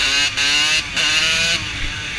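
Kawasaki KX80 dirt bike's 80 cc single-cylinder two-stroke engine revving hard while riding, its pitch climbing and dropping back twice.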